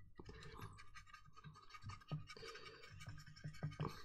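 Faint scratching of a dry brush scrubbing over the painted plastic hull of a model tank in small, irregular strokes.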